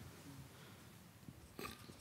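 Near silence: room tone, with one brief faint sound near the end.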